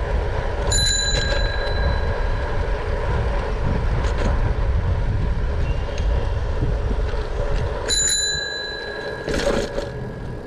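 Bicycle bell rung twice, about seven seconds apart. Each ring is a bright chime that fades over a second or so, over a steady rumble of wind on the microphone.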